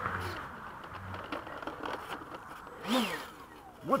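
Whirring hiss from the F-16's 70mm electric ducted fan that dies away within the first half second, leaving a faint background. The pilots take the odd noise for something loose or stuck inside the fan unit.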